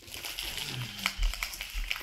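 Plastic wrapper of a hockey card pack crinkling faintly as it is torn open, with a few soft knocks on the table.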